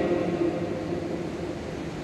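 Brief pause in a priest's chanting: the last sung note fades in the church's reverberation, leaving a steady background hum of room noise.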